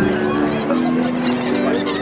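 Street performers' music: sustained low notes that step to a new pitch every half second or so, with short high squeaks repeating a few times a second over them.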